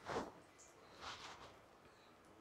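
Wooden spatula stirring melted butter in a nonstick pan: two faint, soft scraping strokes, one at the start and one about a second in.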